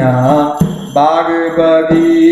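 A man's voice singing a Hindi devotional song (bhajan) in long held, wavering notes, with a musical accompaniment.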